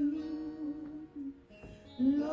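A woman singing a slow worship song into a handheld microphone, holding one long note that fades away about a second and a half in, followed by a brief pause before the next note.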